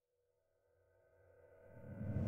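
Near silence with a faint steady electronic drone, then a whoosh sound effect begins to swell near the end, rising into a logo sting.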